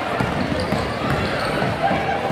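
Gymnasium crowd noise of many voices talking and calling out, with a basketball being dribbled on the hardwood court.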